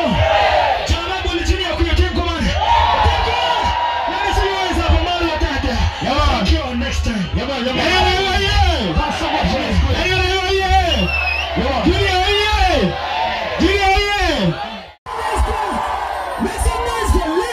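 Live vocals sung or chanted into a microphone over an amplified backing track with a heavy bass line, with crowd noise underneath. The sound drops out for a moment near the end.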